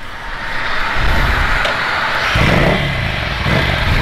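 Ducati Scrambler's 803 cc air-cooled L-twin pulling away and accelerating, getting louder from about a second in. Its pitch rises and then dips once around the middle.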